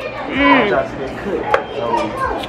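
A short pitched vocal sound, a person's brief hum or exclamation, half a second in, then a sharp knock about a second and a half in, over the background murmur of a fast-food dining room.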